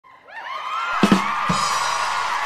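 Short intro sting: music with gliding whistle-like tones that fade in, two drum hits about a second in and half a second apart, and crowd cheering.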